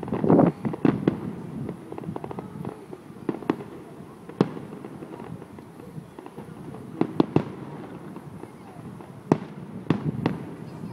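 Aerial fireworks shells bursting as sharp bangs. A dense cluster comes in the first second, the loudest part, followed by single reports every second or two and a quick run of three about seven seconds in. Indistinct voices of people nearby carry on underneath.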